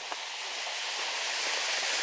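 A stream's waterfall running: a steady rushing hiss that grows slowly louder.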